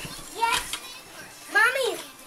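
A young child's wordless voice: a short vocal sound about half a second in, then a louder one near the end that rises and falls in pitch.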